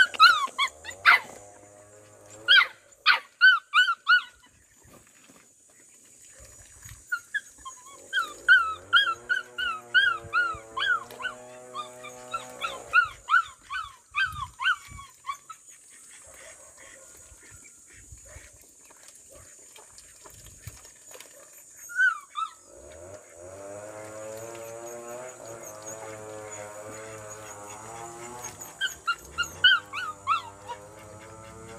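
Puppy whimpering and yelping in short, high, rising-and-falling cries: a few in the first seconds, then a longer run in the middle. Background music plays in stretches.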